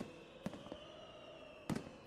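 Faint pops of distant fireworks, a few scattered cracks with the clearest near the end, over a soft sustained music bed.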